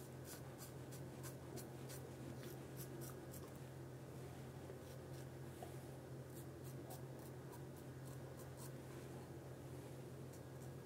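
Double-edge safety razor scraping through lathered stubble in short, quick strokes. The strokes come several a second through the first three seconds, stop for a few seconds, then run again. A steady low hum sits underneath.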